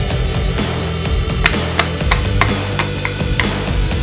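Rock background music, with about six sharp metallic taps in the middle: a hammer striking the finned cylinder of a Yamaha F1ZR two-stroke engine to knock it loose from the crankcase.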